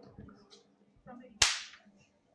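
A single sharp crack about one and a half seconds in, fading quickly in the room.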